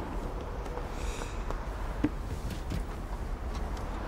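Steady low background rumble with a few faint, soft taps and rustles as a person sits down on a car's open tailgate.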